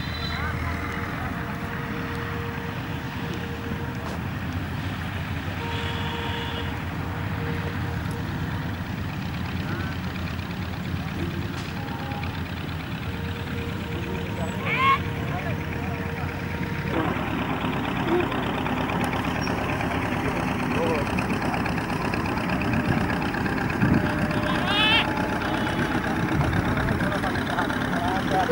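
A steady outdoor din of background voices and engine noise. It grows louder about 17 seconds in, and a couple of short high rising calls stand out.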